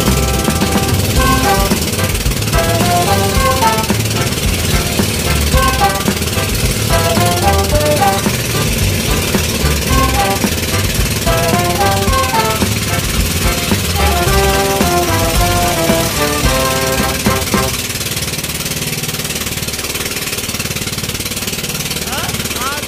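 Melodic background music laid over the steady, rapid chugging of an outrigger boat's engine with a constant hiss of wind and water. The music stops about three-quarters of the way through, leaving the engine running.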